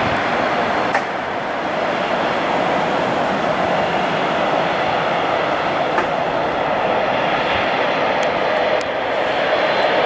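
Bombardier Dash 8 Q400's two Pratt & Whitney PW150A turboprops running at taxi power, a steady drone with two brief clicks about a second in and near the middle.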